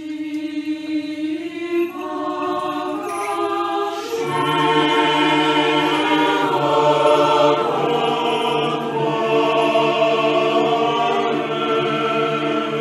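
A choir singing slow, chant-like music in long held notes. Lower voices join about four seconds in, and the singing grows louder.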